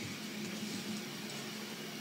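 Room tone between words: a faint, steady hiss with a low hum.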